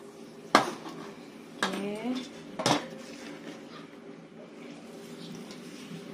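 Stainless steel kitchenware clanking at a sink: three sharp knocks of bowl, spoon and basket against steel in the first three seconds, the second with a brief ring. After that only a steady low hum remains.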